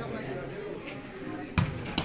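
A volleyball struck by hand: one sharp thump about one and a half seconds in, followed by a lighter hit near the end, over faint background voices.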